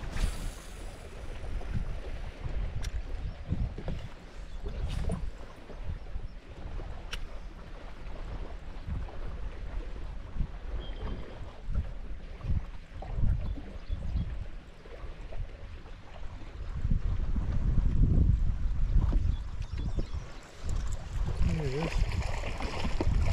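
Wind buffeting the microphone on an open fishing boat, a gusting low rumble that is strongest in the latter part, with water lapping at the hull. A few sharp clicks from the rod and reel come as a lure is cast and reeled in.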